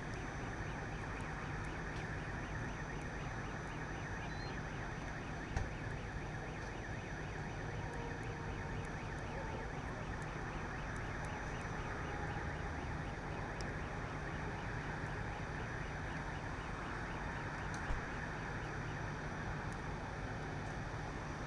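A burning pickup truck, a steady rushing roar over the low rumble of idling fire engines, with two sharp pops from the fire, one about five and a half seconds in and one near the end.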